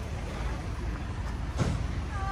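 Low, steady rumble of a motor vehicle engine idling, with a single short tap about one and a half seconds in.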